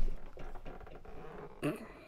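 A man's wordless vocal sounds: a sharp burst right at the start, then a short voiced exclamation near the end.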